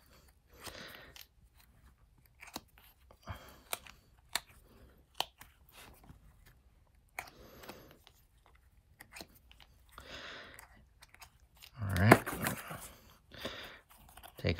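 Small cast cement blocks being worked loose from a flexible mold and set down: scattered light clicks and taps, with soft scraping and crumbling where leftover material is rubbed off.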